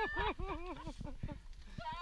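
People laughing: a quick run of short "ha" laughs in the first second that tails off, then picks up again near the end.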